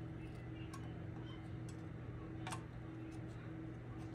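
A few light clicks and ticks from handling the miner's metal-framed cooling fan, with one sharper click about two and a half seconds in, over a steady low hum.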